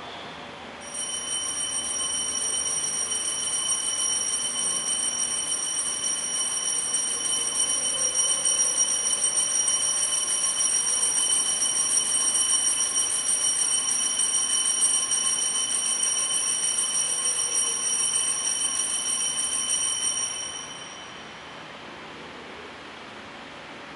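Altar bells rung continuously in a high, rapid, shimmering peal for about twenty seconds, marking the elevation at the consecration; the ringing starts about a second in and stops shortly before the end.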